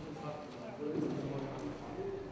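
Indistinct voices of people talking in a hall, loudest about a second in, with a few light knocks of a gymnast's hands on the pommel horse.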